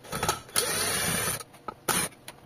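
Cordless drill/driver backing out a screw from a washing machine's clutch assembly: a couple of short blips of the motor, then a steady run of about a second that stops, and another short blip near the end.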